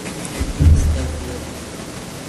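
A low thud about half a second in, followed by a low rumble lasting about a second, over a steady background hiss.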